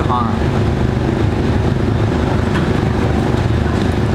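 Steady low engine rumble with a constant hum, unchanging throughout.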